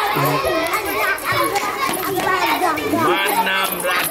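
Many children's voices shouting and calling over one another at once while they play kabaddi.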